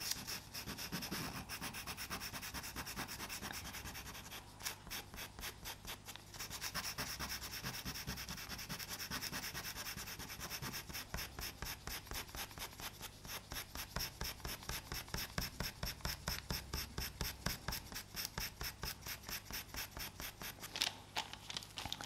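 Pastel pencil scratching on Pastelmat paper in quick short shading strokes, about four a second, with a brief lull about four seconds in.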